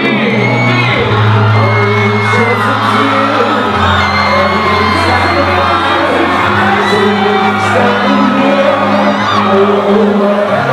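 Live hip-hop concert: a loud beat with long, held bass notes, and a crowd whooping and shouting over it.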